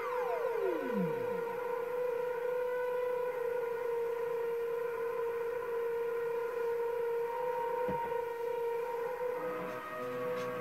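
Drum and bass mix in a beatless breakdown: a synth sweep falls steeply in pitch over the first second or so, then a steady held synth tone plays with no drums. A short falling blip comes near the end, just before the fuller track returns.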